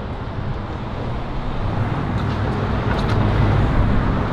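Low steady rumble of a car and the surrounding street traffic, heard from inside the car, with a few faint clicks.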